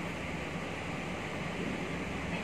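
Steady background room noise, an even hiss with no distinct events.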